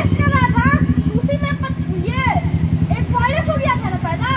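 A voice speaking over the steady, low, fast-pulsing sound of an idling engine.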